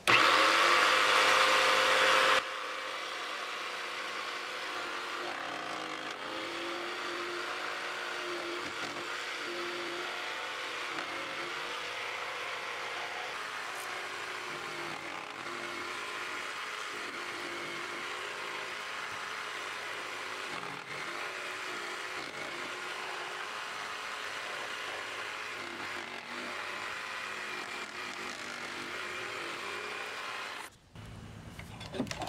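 Rockwell tabletop jigsaw switched on and cutting notches into a pine board with a freshly changed blade. It is loud for about the first two seconds, then drops abruptly to a steadier, lower motor-and-cutting sound that holds to near the end.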